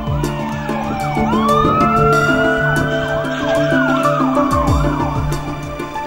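Emergency vehicle sirens over background music with a steady beat: a long wail that rises, holds and falls back, with rapid yelping sweeps overlapping it in the middle.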